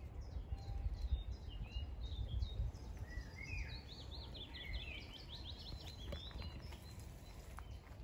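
Small songbirds chirping in the hedge, with a fast run of repeated high chirps in the middle. A low rumble of wind on the microphone underneath, strongest in the first few seconds.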